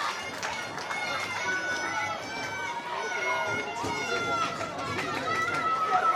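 Spectators chattering in a football stand, many overlapping voices including high-pitched children's voices.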